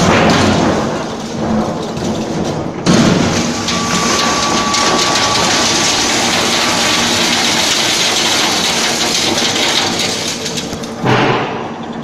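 Industrial metal shredder running and shredding steel paint buckets: a loud, steady rush of noise that jumps louder about three seconds in.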